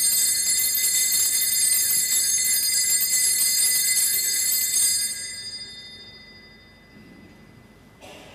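Altar bells ringing at the elevation of the host after the consecration: a cluster of small bells shaken rapidly for about five seconds, then left to ring out and fade away.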